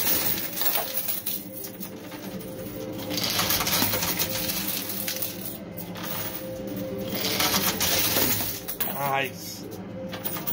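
Coin pusher machine running: quarters clatter and clink as they drop onto the sliding shelves and are shoved along, with two denser spells of clattering partway through and near the end, over a steady low hum.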